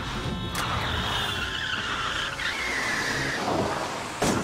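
Car tyres squealing in a skid over a low engine rumble; the squeal slides down in pitch and stops about three and a half seconds in.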